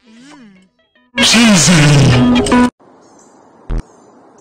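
Cartoon soundtrack with music and a voice, then a very loud, distorted burst of voice-like sound lasting about a second and a half. It cuts to a faint steady outdoor hiss with a short sharp pop near the end.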